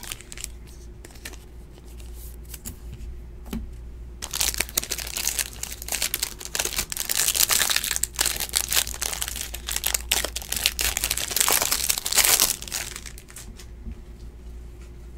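Clear plastic wrapping on a trading-card pack crinkling loudly as hands work it open. It starts about four seconds in and goes on for about eight seconds; before that there are only a few faint handling clicks.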